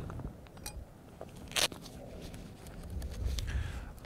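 Small clicks and clinks of a camera lens filter being handled, with one sharper click about a second and a half in, over a low rumble.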